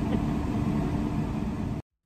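Steady hum and rumble of a car heard from inside the cabin, with a brief laugh at the start. It cuts off suddenly near the end, leaving silence.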